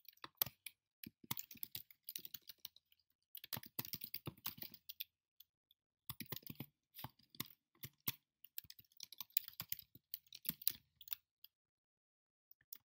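Typing on a computer keyboard: quick keystrokes in short bursts with brief pauses between them.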